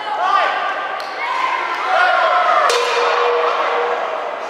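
Several voices shouting over an amateur boxing bout in a sports hall, with a sharp strike about two-thirds of the way through followed by a short steady ring.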